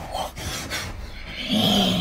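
Plush toys rubbing and scuffing against fabric bedding as they are pushed about by hand, with a short held voice-like sound near the end.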